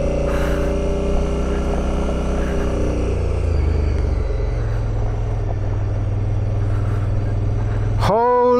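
Twin-cylinder adventure motorcycle engine running under load while riding up a gravel road, with the engine note dropping about three seconds in and then holding steady.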